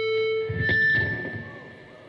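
A rock band's last held chord ringing, cut off about half a second in by a thump, then dying away.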